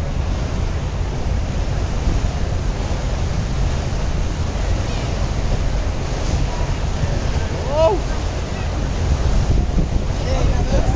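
Wind buffeting the microphone over the steady rush of water in a boat's wake, with one short rising-and-falling call about eight seconds in.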